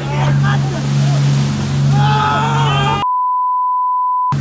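A boat's engine drones steadily under excited shouting and laughter. About three seconds in, everything cuts out and is replaced by a steady, pure bleep tone, a censor beep over a swear word.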